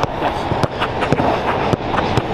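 A football being struck in quick passes and touches: a run of sharp thuds, several a second.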